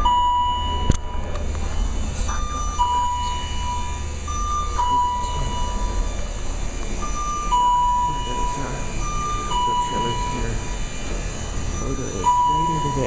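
Carrier-Lift wheelchair platform lift in motion. Its warning signal repeats a two-note high-low beep about every two seconds over a steady low hum. There is one sharp click about a second in.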